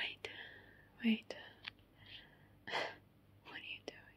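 A woman's soft whispering and breathy sounds close to the microphone, broken by a few short mouth clicks.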